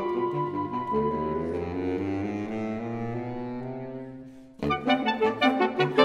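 Saxophone quartet of soprano, alto, tenor and baritone saxophones holding a chord that slowly fades away, then about four and a half seconds in all four come back in loudly with short, detached chords.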